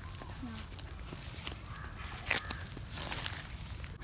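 Footsteps on dry leaf litter and ground: a few scattered crunches and clicks over a low steady rumble.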